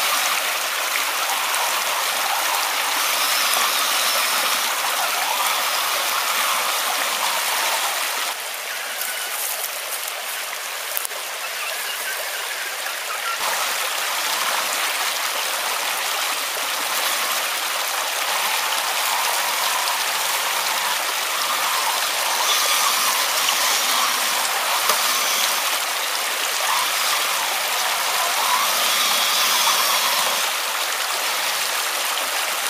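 Shallow rocky stream rushing and splashing over stones, with water churned up by the tyres of a radio-controlled rock crawler driving through it. The rushing drops a little for a few seconds about a third of the way in.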